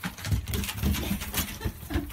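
A European badger scrambling about on wood shavings: quick rustling and scuffling, mixed with a few short low calls from the animal.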